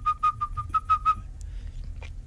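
A rapid run of short, high whistle-like pips at one steady pitch, about seven a second, each with a crisp click, stopping a little over a second in.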